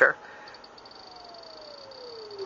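A synthesizer's sine-wave tone, played through a four-pole vactrol lowpass filter, gliding smoothly and steadily down in pitch. It is quiet, with a faint steady high whine above it.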